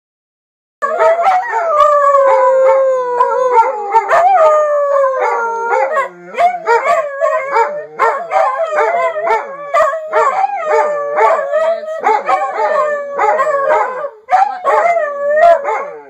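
A beagle and a second dog howling together: a long howl sliding slowly down in pitch for about four seconds, then a run of shorter baying howls, about two a second.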